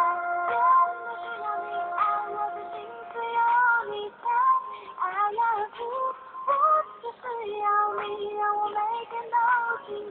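A pop song playing: a voice singing a melody over backing music.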